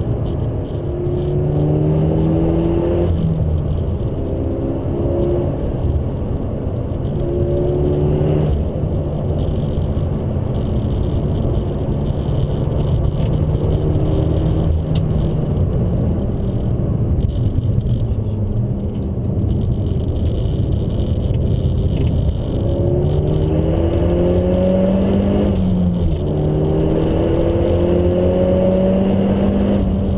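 Peugeot RCZ R's 270 hp turbocharged four-cylinder heard from inside the cabin under hard acceleration on a track, its pitch climbing through the revs and dropping back at each upshift of the six-speed manual gearbox, about three times, over steady road and tyre rumble.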